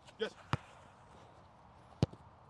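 A football kicked on artificial turf: a single touch about half a second in, then a louder, sharper strike near the end as a shot is hit.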